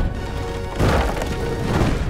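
Cartoon rocket engines firing: a loud, deep rumble that surges twice, about a second apart, over background music.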